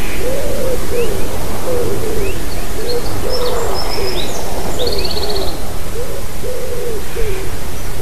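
A bird calling over and over near the nest in short, low, arched notes, about two a second. Fainter high chirps from a smaller bird come in the middle of the run, over a steady hiss of background noise.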